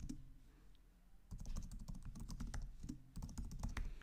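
Typing on a computer keyboard: a run of quick key clicks that thins out for about a second shortly after the start, then picks up again in a dense burst before stopping near the end.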